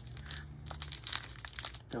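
Small clear plastic baggies of diamond-painting resin drills crinkling as they are handled, a scatter of short crackles over a steady low hum.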